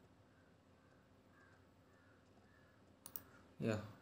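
Quiet room tone, broken about three seconds in by a short cluster of sharp clicks at a computer, then a man's brief 'yeah'.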